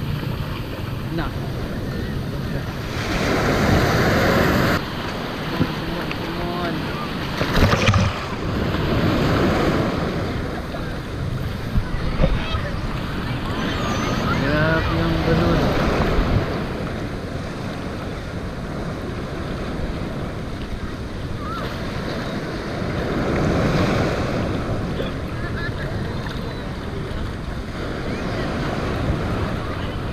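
Shallow surf washing in and breaking around the wader, with wind buffeting the microphone. The wash swells louder a few seconds in and again about two-thirds of the way through.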